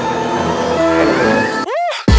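Background music of held tones, ending near the end in a short sweep that rises and then falls.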